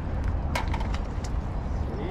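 Steady low outdoor rumble with one sharp click about half a second in.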